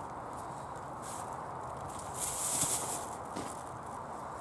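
Hands rummaging through loose potting compost on a plastic tarp, with a louder crinkle of a plastic carrier bag for about a second in the middle as a potato goes into it.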